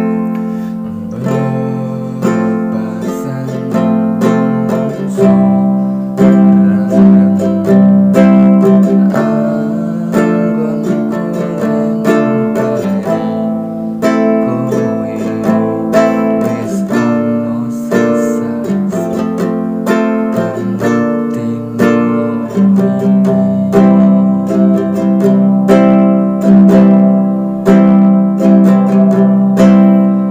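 Small nylon-string acoustic guitar strummed in a steady rhythm, working through the chord progression C, G, Am, Em, F, C, F, G.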